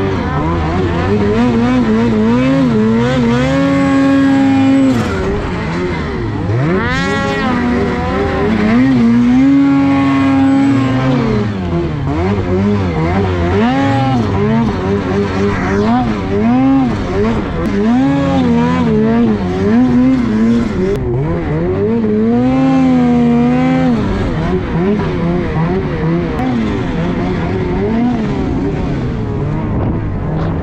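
A 2023 Ski-Doo Gen 5 snowmobile's two-stroke engine is being ridden hard through deep powder, revving up and down over and over. Several times it holds high revs for a second or two before dropping back.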